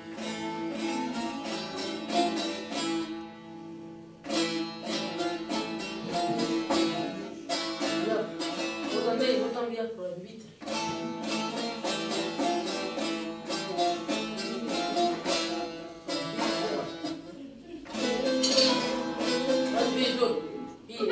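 A bağlama (Turkish long-necked saz) played live: quick plucked notes over ringing drone strings, in phrases with short breaks between them.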